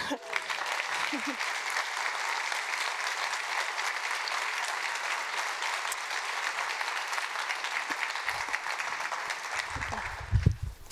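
Audience applauding: many hands clapping steadily, dying away near the end.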